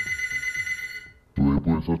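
Steady high electronic ringing tone, a telephone-style alert sound effect signalling an incoming call, fading out about a second in. A voice starts speaking shortly after.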